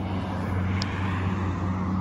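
City road traffic: a steady low engine hum with a wash of tyre noise from vehicles on the street. A brief high chirp comes a little under a second in.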